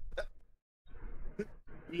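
Soft, short bursts of laughter trailing off after a joke, then a brief near-silent pause and a quiet spoken word.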